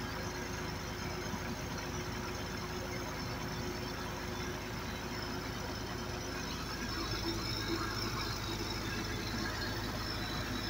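John Deere 750B crawler dozer's diesel engine running steadily during a hydraulic pressure test, getting slightly louder about seven seconds in.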